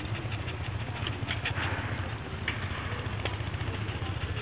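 Scattered light metallic clicks and jingles from the working harness of a pair of Shire plough horses, trace chains and horse brasses, as they walk pulling a plough, over a steady low drone.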